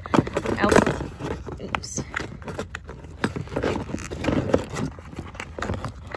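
Hand rummaging in a car door pocket: plastic crinkling with light clicks and knocks of small objects being handled, loudest in the first second and again around the middle.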